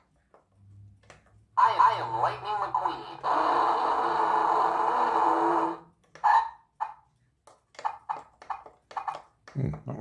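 Lightning McQueen toy car's built-in speaker playing its recorded voice lines and sound effects as its buttons are pressed: a spoken phrase about 1.5 s in, a steady sound lasting about two and a half seconds, then several short snippets. It makes a funny noise, put down to run-down batteries.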